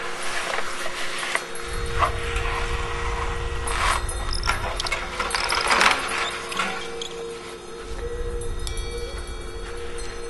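An ambient soundtrack: a steady low drone with washes of noise and a low rumble that comes and goes, and a few short rustling clicks.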